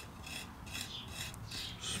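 A small piece of wood scraping along the side of an unfired clay pot in quick, repeated scraping strokes, about three or four a second, smoothing the pot's wall.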